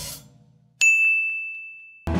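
Video-editing sound effect: the tail of an earlier hit fades out, then just under a second in a single bright ding rings out and decays over about a second, a 'correct' chime for an on-screen checkmark.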